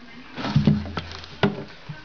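A jungle carpet python striking a feeder rat held out on tongs: a loud thump about half a second in, then a few sharp knocks as the snake drags the rat down into the wood-chip bedding and coils on it.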